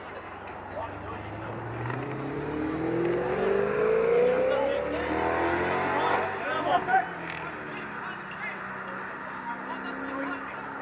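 A motor vehicle accelerating past, its engine note rising steadily for a few seconds, loudest about four seconds in, then fading. Brief shouts come about two-thirds of the way through.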